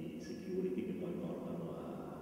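Speech: a person talking over a microphone.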